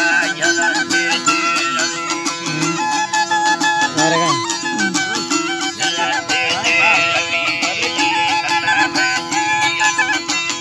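Traditional folk music: a steady held drone under a wavering string melody, driven by a fast, even pulse of sharp plucked or struck strokes.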